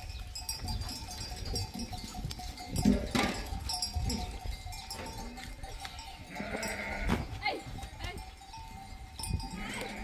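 A herd of goats, with occasional bleats, among scattered knocks and scuffs, the loudest about three seconds in.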